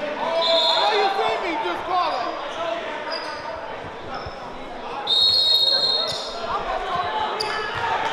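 A basketball being dribbled on a hardwood gym floor under the chatter of a standing crowd, echoing in a large hall. A high held tone rises above the crowd about five seconds in.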